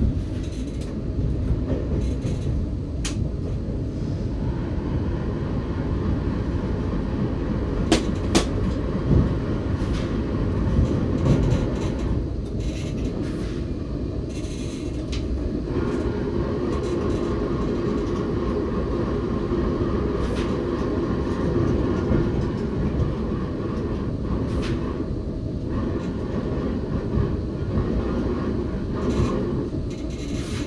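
RER B commuter train heard from inside the driver's cab, with a steady rumble as it runs through a tunnel into an underground station. A few sharp clicks come about eight to eleven seconds in. From about halfway, as it runs alongside the platform, a steadier hum joins the rumble.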